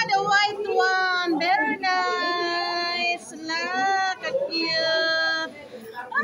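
A child's voice singing, with a few quick syllables at first and then three long, high held notes, the middle one sliding up and down in pitch.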